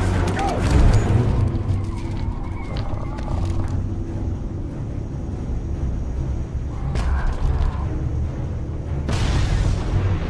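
Action-film soundtrack mix: dramatic music over deep rumbling and booms, with a loud rush of noise starting about nine seconds in.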